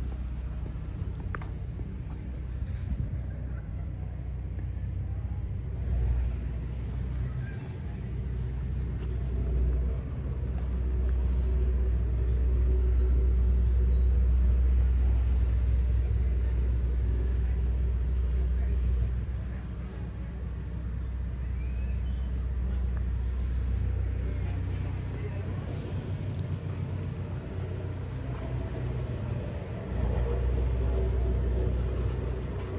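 Outdoor village street ambience: a steady low rumble that swells for several seconds in the middle, with faint voices.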